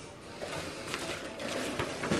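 Faint rustling and light handling noise from a cardboard box and its packaging being sorted.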